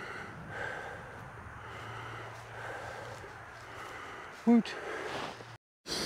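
A man breathing hard, winded after a run of hard throws, with one short voiced grunt about four and a half seconds in. The sound cuts out briefly near the end.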